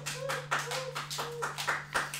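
Loose sheets of paper being shuffled and flipped through by hand: a rapid run of crisp rustles and light taps.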